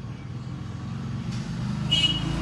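A low, steady engine-like rumble that grows gradually louder, as of a motor vehicle approaching. A short high beep comes near the end.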